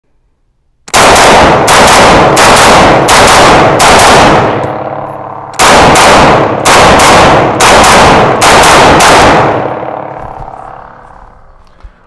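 IWI Tavor X95 bullpup rifle fired in rapid succession, about three shots a second, in two strings of roughly ten shots each with a pause of about a second between them. The shots echo off the walls of an indoor range, and the echo dies away over the last couple of seconds.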